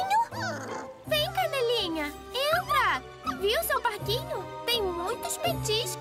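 Cartoon puppies whining and whimpering in a string of short cries that slide up and down in pitch, over soft background music. The cries are the sign of puppies that are uneasy and don't want to go in.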